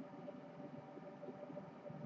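Faint room tone from the narrator's microphone with a low, steady hum; no distinct sound.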